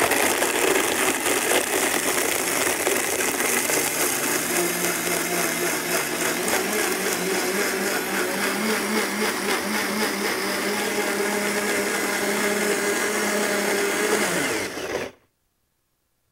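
Countertop bar blender running at full speed, crushing ice into a frozen strawberry daiquiri. The motor's pitch steps up slightly about four seconds in, and the blender cuts off suddenly about fifteen seconds in.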